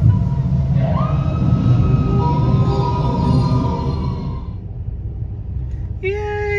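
Steady low rumble of a slow-moving car heard from inside the cabin. From about a second in, a held high tone sounds over it and fades out a little past the middle.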